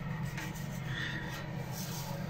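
Dry breadcrumbs sliding and rustling across a greased metal baking tray as it is tilted back and forth to coat it, a soft steady rubbing sound.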